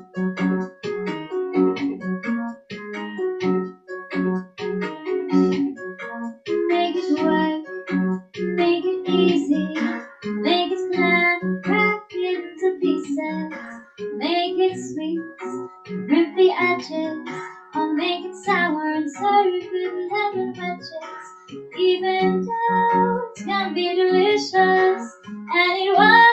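A piano backing track starts with a steady repeating accompaniment, and a girl's singing voice joins it a few seconds in, sung into a handheld microphone.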